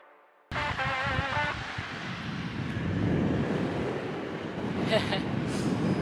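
Wind rushing over the microphone of a camera moving along with a cyclist, a steady rush that builds after a short gap of silence at the start. A brief snatch of music plays about a second in and stops.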